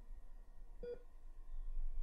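Hospital bedside monitor giving a single short electronic beep about a second in, over a faint low hum.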